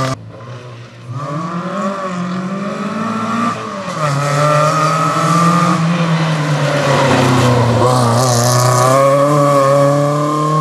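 Fiat 850 Berlina rally car engine accelerating hard: the note climbs, drops at a gear change about four seconds in, then holds high with small wavers. A rushing hiss rises over it near the end.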